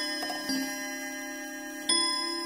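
A small bell ringing, struck twice (about half a second in and again near the end), each strike ringing on in clear steady tones.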